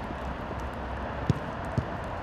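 Two dull thumps of a football being kicked, about half a second apart, over steady outdoor background noise.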